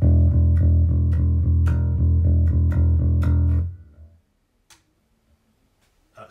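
Cort Curbow 4 four-string electric bass in passive mode, played through an amplifier: one low note plucked over and over, about twice a second, for nearly four seconds, then let die away.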